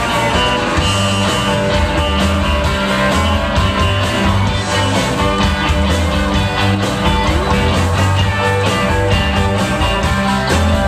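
Live rock and roll band playing: electric guitars over drums and bass guitar in a steady, full-band groove.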